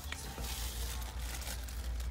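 Plastic-wrapped paper towel packs crinkling and rustling as they are handled, strongest for about a second in the middle, over a low steady rumble.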